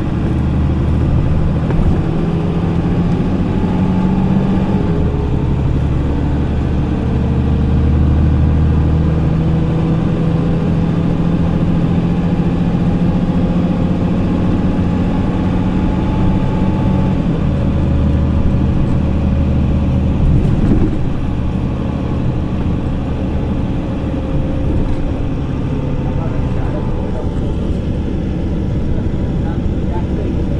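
A 2005 MAN 18.280 HOCL-NL city bus heard on board while under way: its MAN D0836 LUH six-cylinder diesel pulls through the ZF 6HP502C automatic gearbox. The engine note climbs over the first few seconds and drops at a gear change about five seconds in, holds steady, then drops again around seventeen seconds, with a brief knock a few seconds later.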